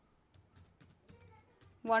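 Computer keyboard keys tapped in a quick, faint run as a single word is typed.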